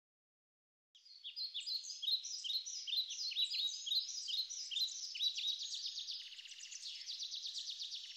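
Birds chirping: many short, overlapping high-pitched chirps that begin about a second in and turn to rapid trills in the last couple of seconds.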